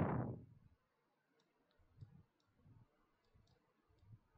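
Near silence with a few faint clicks about two seconds in, after a spoken word trails off at the very start.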